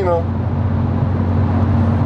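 Volkswagen Golf GTI Edition 30 (Mk5) cruising at a constant speed, heard from inside the cabin: its turbocharged 2.0-litre four-cylinder drones steadily at an unchanging pitch over tyre and road noise.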